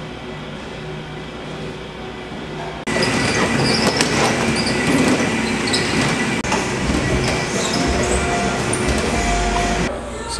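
A stair-climber stepmill's revolving stairs running, a loud mechanical clatter with a steady whine and steps landing, starting suddenly about three seconds in after a quieter stretch of room sound.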